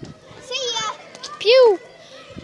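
A child's voice making 'pew' shooting noises: a quieter one about half a second in and a louder one about a second and a half in, each rising and then falling in pitch.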